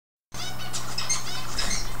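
Birds chirping in the background over a steady low hum, starting a moment in.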